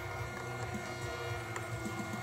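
Steady low electrical hum with several faint, steady high-pitched whines.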